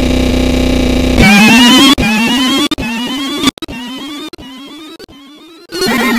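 Harsh, distorted electronic noise: a buzzing tone, then from about a second in a loud warbling, wavering synth sound chopped into pieces that get quieter in steps, until the buzzing tone cuts back in near the end.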